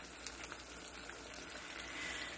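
Flour-and-cornstarch-coated chicken thigh pieces frying in hot coconut oil in a skillet: a steady crackling sizzle.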